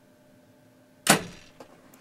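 Hunting bow shot at a whitetail doe: one sharp, loud crack of the released string about a second in, fading quickly, followed by a couple of faint ticks.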